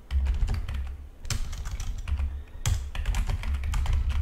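Typing on a computer keyboard: an irregular run of key clicks with dull thuds underneath, two keystrokes landing harder than the rest, one a little over a second in and one near three seconds.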